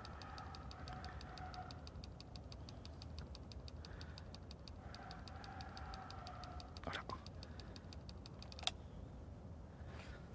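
Quiet night-time background: a faint, rapid, even ticking about six times a second, two faint humming tones a second or two long, and a couple of soft clicks near the end.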